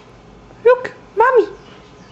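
A baby babbling: two short high-pitched coos about half a second apart, each rising and then falling in pitch.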